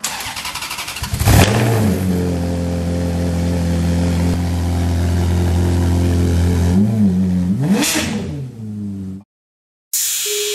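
Engine cranking over for about a second, catching, then idling steadily; it is revved twice near the end and the sound cuts off suddenly.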